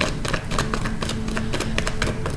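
A rapid, irregular run of light clicks and taps over faint, steady background music.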